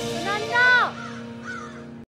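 Closing music under a held low note, with one loud falling pitched call about half a second in. Two fainter falling calls follow, and the sound cuts off suddenly at the end.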